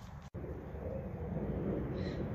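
Wind buffeting an outdoor microphone, a steady low rumble, broken by a split-second dropout about a third of a second in.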